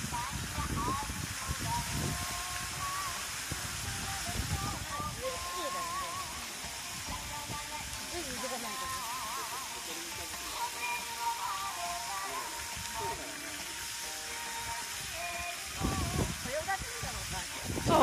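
Fountain-show water jets spraying with a steady hiss, while a song with a singing voice plays over loudspeakers as the fountain's accompaniment.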